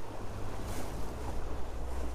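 Steady low rumble and wash of water along the hull of a Dehler 30 OD yacht under way, heard from inside the cabin.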